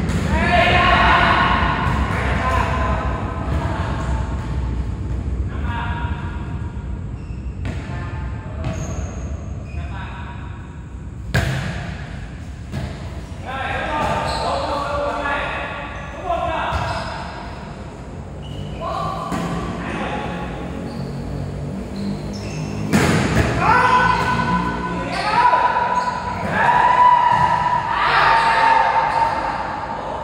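Indoor volleyball rally: players' shouts and chatter echo in a large hall, broken by the sharp smack of the ball being hit several times. The calls grow louder and more drawn-out near the end.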